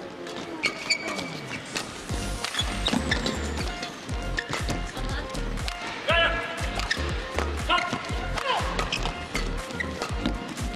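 Badminton doubles rally: sharp racket strikes on the shuttlecock and shoes squeaking on the court mat, with a short squeal about six seconds in, over background music with a steady low beat.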